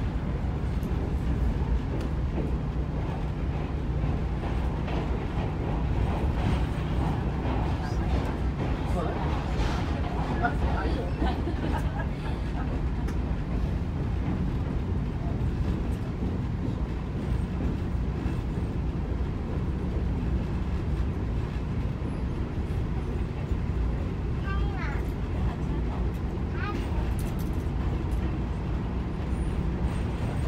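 Steady low rumble of a passenger railroad coach running through a rail tunnel, heard from inside the car.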